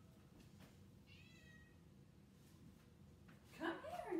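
A domestic cat meowing from another room, one faint, high-pitched meow about a second in. Near the end a louder, voice-like sound with shifting pitch begins.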